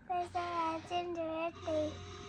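A young girl singing a short phrase of several held notes in a row.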